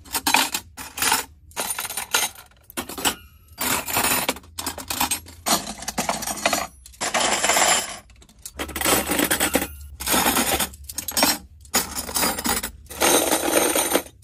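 Coloured metal chopsticks and table knives clattering and jingling against each other as handfuls are lifted out of clear plastic storage bins, in a run of short bursts with brief pauses between.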